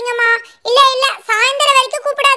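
A high-pitched, child-like voice singing short held notes, with a brief break about half a second in.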